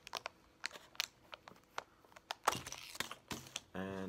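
Scattered light clicks and crinkles of a small plastic hook packet being handled, with a louder cluster of rustles about two and a half seconds in.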